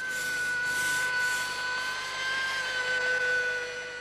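Electric power tool motor running at a steady speed, giving a steady whine that wavers slightly in pitch over a hiss.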